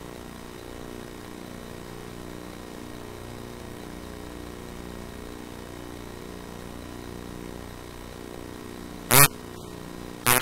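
A steady, even machine hum, with one short, loud sound about nine seconds in.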